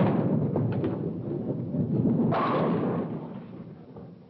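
A bowling ball lands on a wooden lane with a thud and rolls with a low rumble. A little over two seconds in it crashes into the pins with a clatter.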